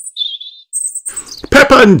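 Small birds chirping in short, very high-pitched warbling tweets during the first second. A narrator's voice starts reading near the end.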